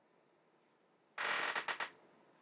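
A short mechanical creak or rattle of several quick strokes, lasting under a second, starting just over a second in, against faint room tone.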